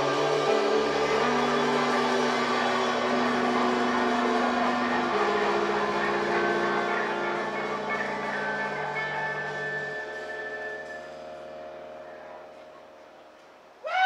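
Electric guitar and bass guitar holding chords that ring out and fade away over several seconds, with the low bass notes stopping about ten seconds in. A sudden loud burst with sliding pitches comes right at the end.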